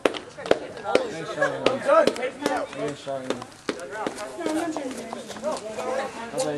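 Onlooking crowd of young people talking and calling out over one another, with words too indistinct to make out, and a scatter of sharp clicks and knocks at irregular intervals.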